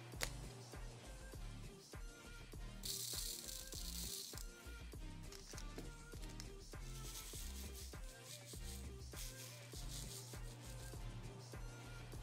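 Background music with a steady beat. About three seconds in comes a brief rattling hiss of small resin diamond-painting drills being poured into a plastic tray, with two shorter rattles later.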